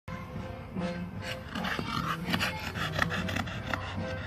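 Staffordshire bull terrier panting, with repeated rasping breaths.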